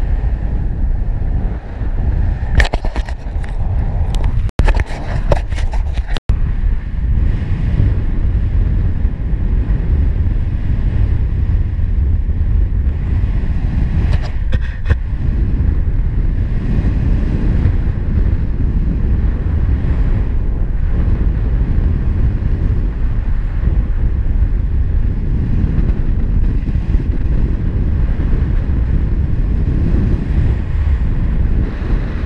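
Wind buffeting the microphone of a helmet- or harness-mounted action camera in paraglider flight: a loud, steady low rumble. There are bursts of crackling a few seconds in and again about halfway, and the sound cuts out for an instant twice early on.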